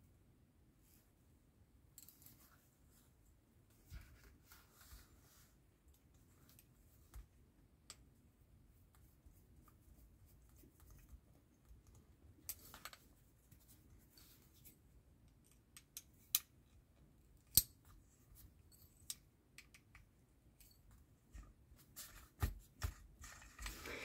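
Faint, scattered clicks and short scrapes of a small screwdriver and plastic parts as the wheel screw is driven through a plastic washer into the hub of a plastic scale-model wheel. The sharpest click comes about two-thirds of the way through, with a cluster of clicks near the end.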